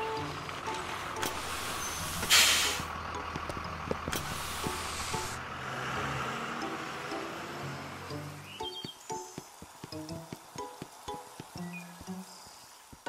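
Cartoon sound effect of a city bus running with a low rumble, with a short loud hiss about two seconds in and a longer hiss about four seconds in. Light plucked background music with short notes takes over from about nine seconds in.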